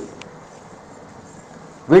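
A pause in a man's voice-over: faint steady hiss with one brief click just after the start, then his speech resumes near the end.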